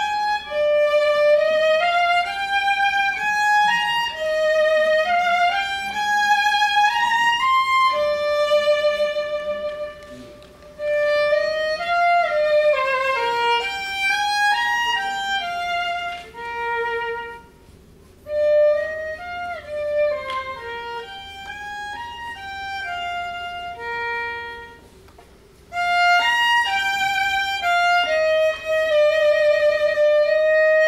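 Solo violin playing a melody of rising and falling runs and held notes, with brief pauses three times.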